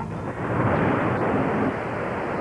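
A rushing, rumbling noise swelling up about half a second in and holding steady: a TV transition sound effect under a screen wipe.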